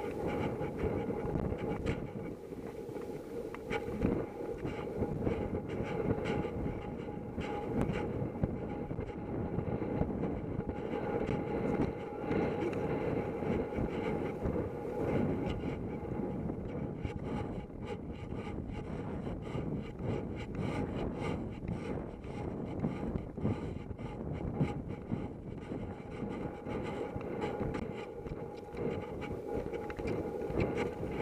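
A horse's hoofbeats drumming steadily on turf at cross-country pace, heard from a rider's helmet camera over a continuous rush of wind noise.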